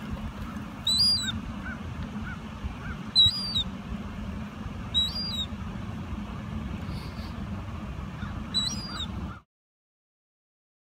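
Gulls feeding on the ground give short, high-pitched calls four times, each rising then falling, with a few fainter, lower calls in between, over a steady low background rumble. All sound stops abruptly near the end.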